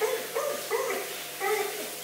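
A dog making a string of short, pitched whining yips, several in two seconds, over the steady hiss of a handheld shower spraying water on her coat.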